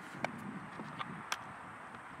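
Steady outdoor background noise with three short, sharp clicks, the first about a quarter second in and two more around a second in.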